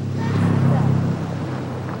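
Small motor scooter passing on the road, its engine running with a steady low drone that is loudest in the first second and then fades away.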